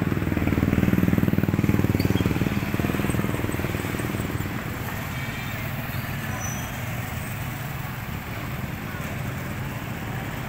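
Small motorcycle engine passing close, loudest about a second in and fading over the next few seconds, then a steady hum of street traffic with motorcycles and tricycles.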